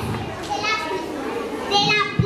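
Children's voices chattering and calling out in a large hall, with a high child's voice loudest near the end.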